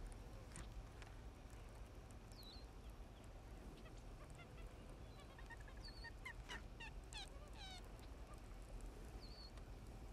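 Faint calls of wild birds over quiet open-water ambience: a few scattered chirps, then a quick run of repeated sliding calls about six to eight seconds in.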